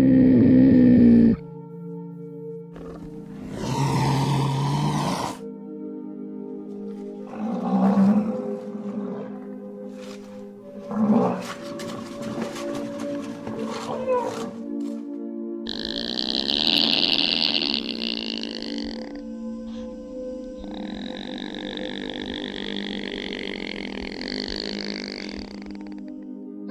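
Steady background music with animal calls laid over it: a leopard's growling calls in the first few seconds, the loudest at the very start, followed by further animal calls later, including a long high-pitched one about two-thirds of the way in.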